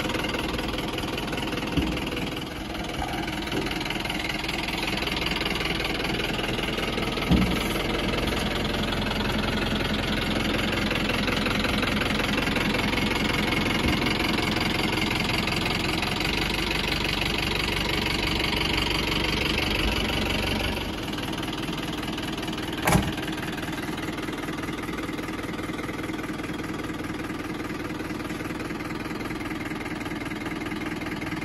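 Mahindra Bolero Pickup's engine running steadily with its hydraulic tipping body raised. About two-thirds of the way through the sound becomes quieter and lighter. There is a sharp knock about seven seconds in and another a little after the change.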